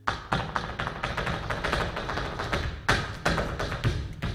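Flamenco zapateado: a fast, dense run of shoe heel-and-toe strikes on a wooden stage floor, starting suddenly, with a few heavier stamps standing out, the loudest about three seconds in.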